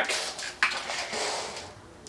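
Handling noise as an electric guitar is swung round and its player's clothing moves: a click about half a second in, then about a second of rustling that fades away.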